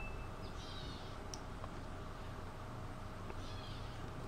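Quiet room tone: a steady low hum with a few faint, short high chirps.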